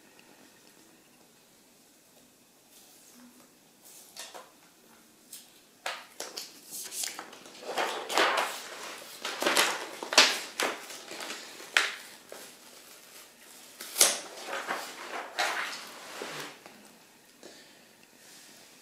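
Clear protective plastic film being peeled off the front of a new laptop LCD panel, crackling and rustling in irregular bursts that start about six seconds in and die away near the end.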